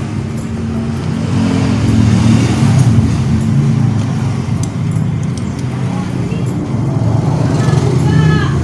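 A motor vehicle engine running steadily, a low hum that grows a little louder about two seconds in.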